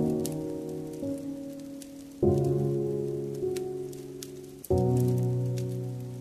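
Slow solo piano chords, each struck and left to ring and fade, with new chords about two seconds in and near five seconds, over the small sharp pops and crackles of a wood fire.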